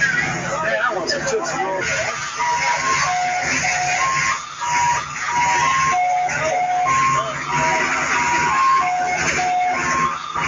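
A simple tune of clear, high single notes that starts about two and a half seconds in and repeats about every two seconds, heard over crowd chatter.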